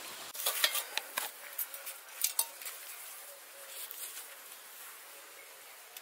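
Stainless steel plates and bowls clinking and scraping as food is served by hand: a few sharp clinks in the first two and a half seconds, then quieter handling.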